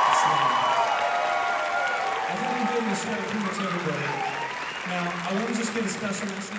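Concert audience applauding and cheering for the band, the applause loud at first and dying away over the following seconds.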